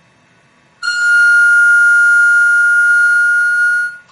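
A single steady high-pitched tone with overtones, starting about a second in, held at one pitch for about three seconds, then cutting off suddenly.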